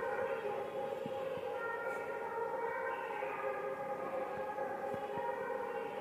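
Steady, sustained tones of devotional music or chanting with no beat, several held notes sounding together, with some higher notes coming in and fading around two to three seconds in.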